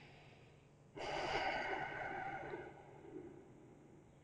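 A man's slow, deep breath, heard as one long airy breath that starts about a second in, lasts about two seconds and fades out.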